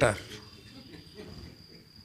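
A man's word trails off at the start, then a pause in which a faint, steady high-pitched whine holds on one pitch.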